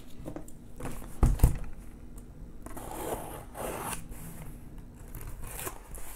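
A cardboard shipping case being opened by hand: packing tape and cardboard scraping and tearing, with a single thump about a second in.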